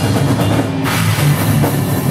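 A live heavy metal band playing loud, with the drum kit up front: drums, with cymbals that fall away a little before the middle.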